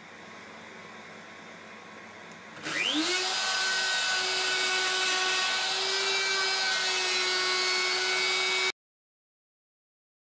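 Electric plunge router starting up about three seconds in, its whine rising quickly to full speed, then running steadily as it cuts a slot into walnut. The sound cuts off abruptly near the end.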